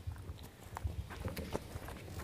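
Faint footsteps: a few irregular hard taps of shoes on a floor over low room rumble.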